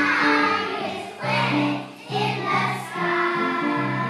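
A group of young children singing together over an instrumental accompaniment, in phrases with short breaks between them.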